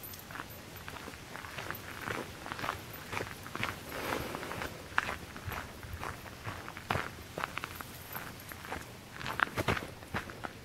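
Footsteps on a gravel path at walking pace, in an irregular series of short steps, with a quicker, louder cluster near the end.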